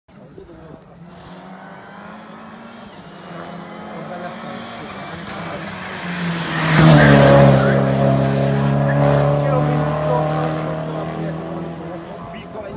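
Peugeot 308 Cup race car with a 1.6-litre turbocharged engine approaching at speed, passing close by about seven seconds in with a drop in pitch, then pulling away. The engine grows steadily louder as it nears and is loudest as it passes.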